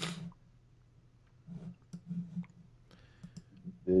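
Scattered, irregular key clicks of someone typing out a short text message.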